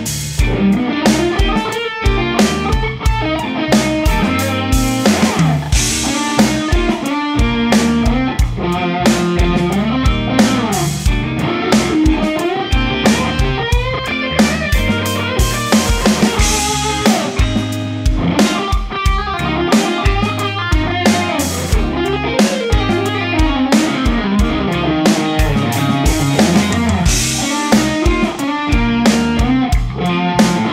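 Electric guitar playing a funky jazz-fusion lead solo over a backing track with drums and bass.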